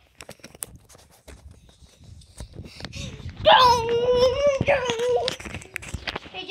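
A child's voice holding a long, wavering vocal note for about two seconds, starting about three and a half seconds in. Before it come scattered clicks and rustling from the tablet being handled close to its microphone while spinning.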